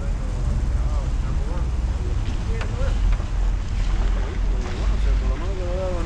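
Wind buffeting the microphone, a steady low rumble, with faint voices talking in the background.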